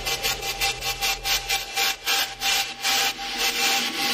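Techno build-up section: a scraping noise hit repeats about four times a second over a held tone. The bass drops out about halfway through.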